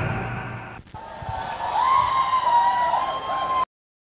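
The stage show's music dies away in the first second. Then comes a wavering, whistle-like tone with voices, an audience cheering and whistling at the end of the dance, until the sound cuts off abruptly near the end.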